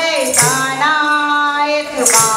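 Women singing a Hindu devotional song, holding one long note, with a tambourine jingling once at the start.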